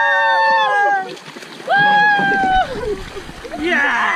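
Several voices shouting long, drawn-out calls together, one held call after another, with water splashing under them about two and a half seconds in.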